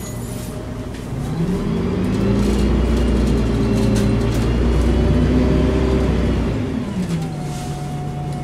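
Volvo Olympian double-decker bus's diesel engine heard from the upper deck. The engine note climbs and grows louder about a second in as the bus accelerates, holds, then falls back about seven seconds in.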